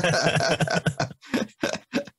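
Several men laughing together in quick, rhythmic pulses, trailing off into shorter separate bursts near the end.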